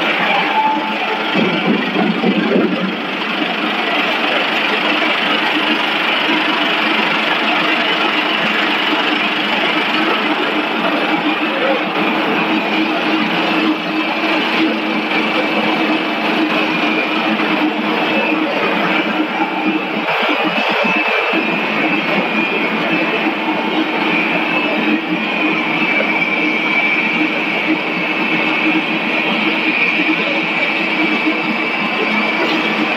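Corn curl snack production line machinery (extruder, continuous fryer and conveyors) running steadily: a loud, even mechanical noise with a constant low hum and a high whine.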